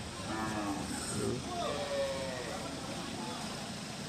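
Cattle mooing: a drawn-out call that falls slightly in pitch, with voices in the background.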